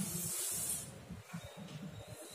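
Chalk scratching on a chalkboard during writing: a hissing scrape for most of the first second, then fainter, broken scratches.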